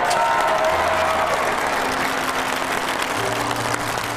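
Large concert audience applauding as a song ends, over the band's final sustained notes. The applause breaks out right at the start and carries on steadily.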